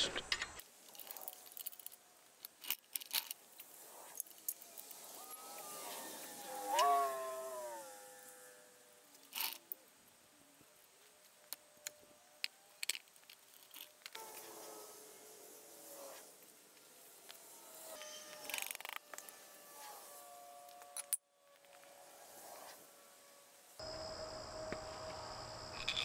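Sped-up sound of hand-tool work as the oil pan of a small Kohler engine is unbolted: faint, scattered quick clicks and clinks of a wrench and bolts, with a brief high-pitched warbling sound several seconds in.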